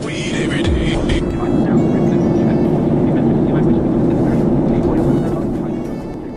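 Steady roar of a Boeing 737-800's cabin in cruise flight, heard from a passenger seat. It fades away near the end.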